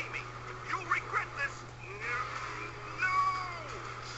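A series of short, high-pitched squeaky cries that slide up and down in pitch, with a longer one about three seconds in, over a steady low hum.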